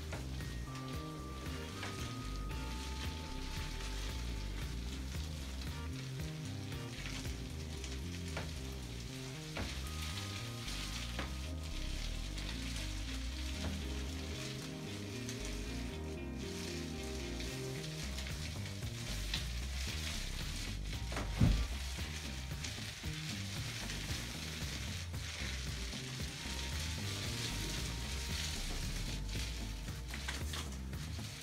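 Sheepskin paint roller loaded with emulsion being rolled up and down a wall: a steady wet hiss, over quiet background music. One sharp knock about two-thirds of the way through.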